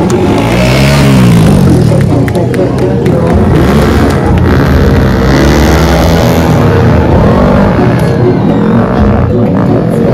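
Motorcycle engines revving, rising and falling in pitch as stunt bikes ride, over loud music.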